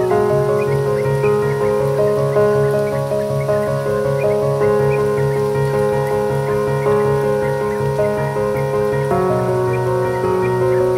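Instrumental ambient, neo-classical music. Held chords sit over a low, pulsing bass, with short high blips scattered above them, and the harmony shifts to a new chord near the end.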